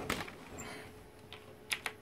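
A few irregular, sharp clicks and taps, with two quick ones close together near the end, over a faint steady hum.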